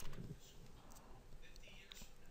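Quiet desk room tone: a soft breath at the start, then a faint click near the end.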